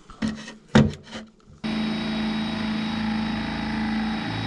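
A few short knocks, then about one and a half seconds in a power drill with a spade bit starts boring into a wooden board and runs at a steady speed.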